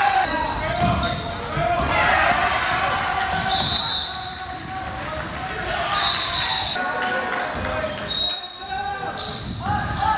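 Basketball game sound in a gym: a ball bouncing on the court and voices of players and spectators echoing in the hall. Three brief high squeaks, typical of sneakers on the court floor, come a few seconds in, around the middle and near the end.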